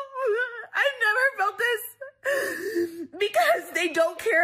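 A woman crying and wailing while trying to talk, her voice wavering and breaking, with short gasping pauses.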